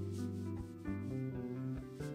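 Small jazz trio playing: electric bass notes and piano over drums, with a couple of cymbal strokes washing across the top.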